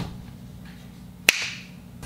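A single sharp snap about a second in, with a short hissing tail that fades out.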